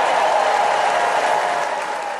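A large convention crowd applauding and cheering, easing off slightly near the end.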